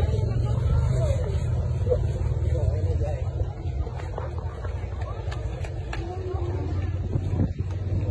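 Steady low rumble of street traffic, with indistinct voices of people close by.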